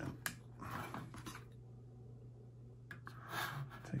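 Hard plastic model-kit parts being pressed into their sockets and handled: a sharp click just after the start with scratchy rubbing for about a second and a half, then another click and a short rustle about three seconds in, over a low steady hum.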